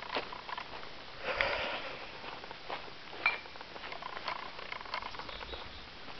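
Irregular crunching and clicking of travel over a dirt and gravel forest trail, with a louder rustling crunch about a second in and a sharp click a little after three seconds.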